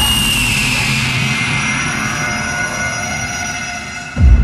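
Electronic sweep effect in a hardstyle track's breakdown: a wash of rushing noise with several high synth tones gliding slowly downward, gradually fading.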